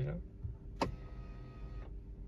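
A click, then the Tesla Model 3's electric seat and steering-column adjustment motors run with a steady whine for about a second and stop abruptly. This is the seat and wheel moving to the easy-entry position as that driver profile is selected.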